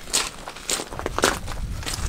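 Footsteps on a loose wood-chip path: four steps, about two a second.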